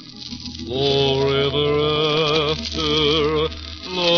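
Organ music: slow, held chords over sustained bass notes, the chord changing about every second, after a brief dip at the start. The recording is an old broadcast with the treble cut off.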